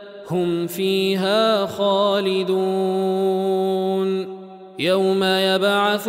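Male Quran reciter chanting in melodic tajweed in the Warsh recitation, holding long drawn-out notes with ornamented pitch turns. The voice breaks off briefly at the start and again about four seconds in.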